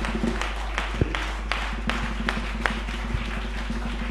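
A congregation clapping: a haze of scattered hand claps with a few sharper ones standing out, over a steady low hum.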